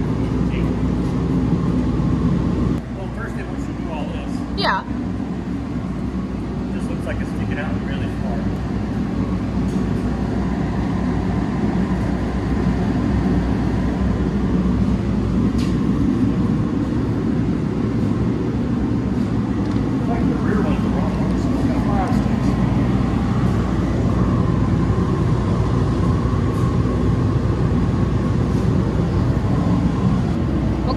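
Steady low machine hum, with faint murmured voices and light handling clicks, one sharper at about five seconds.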